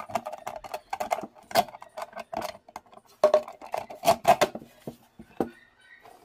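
Irregular clicks and knocks as the metal frame of a speaker driver is handled against an MDF board while being fitted into its cutout, loudest in a cluster about halfway through.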